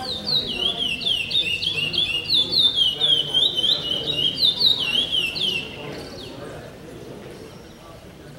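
Caged songbird singing its 'pico pico' song with repetition: a fast run of rising and falling whistled notes, the phrase repeated several times, breaking off about six seconds in.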